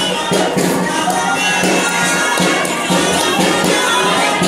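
Live traditional folk music: a droning reed melody held over a steady low note, with regular percussion beats, over a murmuring crowd.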